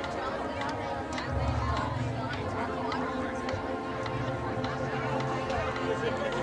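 Marching band playing on the field: sustained brass chords with scattered drum hits, with voices from the stands over it.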